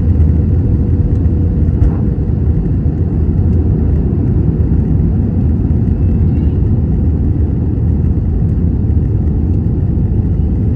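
Airbus A320 cabin noise on final approach with the landing gear down: a steady low rumble of airflow and jet engines heard from a window seat over the wing.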